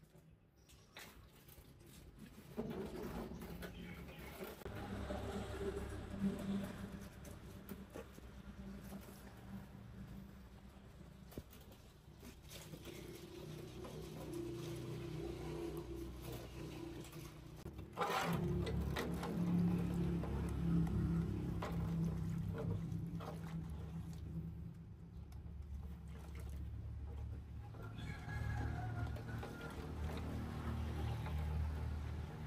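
Tapered roller bearings from a truck wheel hub being washed by hand in a steel basin of cleaning fluid, with liquid sloshing and metal parts being handled, over a steady low rumble that becomes suddenly louder about eighteen seconds in.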